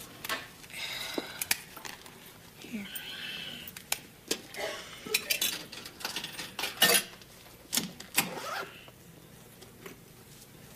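Coins clinking and the metallic clicks and clunks of a soda vending machine being worked: a scattered run of sharp knocks, the loudest about seven seconds in.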